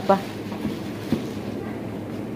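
A word spoken at the start, then steady background noise with two faint knocks around the middle.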